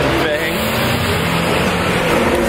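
City street traffic: a nearby motor vehicle's engine running with a steady low drone under the general road noise.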